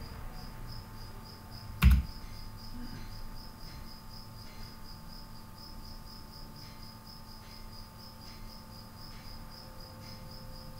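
A single sharp computer-keyboard key click about two seconds in, over a steady high-pitched chirping pulse, about four a second, that runs throughout, with a few faint clicks after it.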